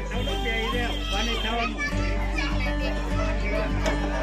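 Children's voices chattering and calling out over music with a steady beat.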